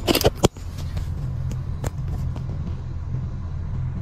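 A few sharp clicks and knocks from hands handling the scooter's parts in the first half second, and another click just before two seconds in, over a steady low hum.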